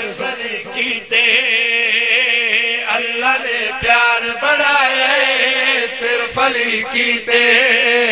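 A man's voice chanting a verse in a long, wavering, melodic line through a microphone and loudspeaker system, the held notes hardly breaking.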